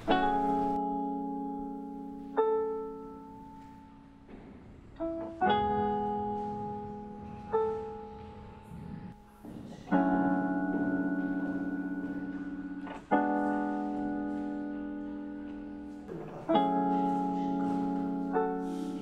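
Background piano music: slow, held chords struck every two to three seconds, each left to ring and fade.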